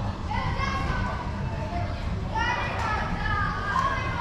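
Children shouting and calling out with high voices in two stretches, one just after the start and one from about halfway to the end, over a steady low rumble.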